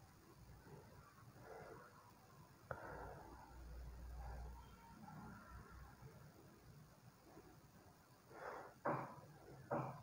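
Near silence with faint handling noise as a paper insulation strip is fitted around a coil former. There is one light click about three seconds in and a few soft rustles near the end.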